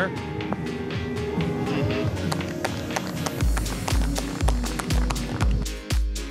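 Background music; a steady beat with deep bass kicks about twice a second comes in about three and a half seconds in.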